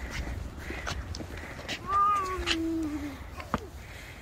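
A young child's voice makes one drawn-out whining cry about two seconds in, falling in pitch and lasting about a second. Scattered clicks and rattles, likely the kick scooter's small plastic wheels on the boards, sound around it, with one sharp click shortly after.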